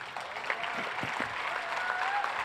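Audience applauding, a steady patter of many hands clapping that starts as the speaker's sentence ends.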